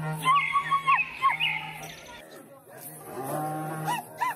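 Group of voices chanting: a low, steady droning note with higher held, wavering notes over it, busiest in the first two seconds; the drone breaks off about halfway through and comes back.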